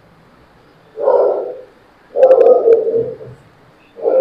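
Pigeons cooing: a short coo about a second in, then a longer, slightly falling coo about two seconds in, with a few faint clicks during the second coo.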